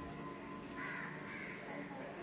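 A crow cawing twice, short harsh calls about a second in, over a steady low hum.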